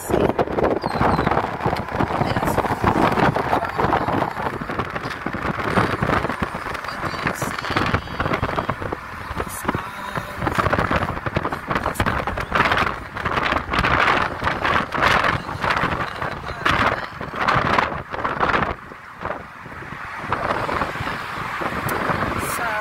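Wind buffeting the microphone of a phone filming from a moving car, over road noise, rising and falling in uneven gusts.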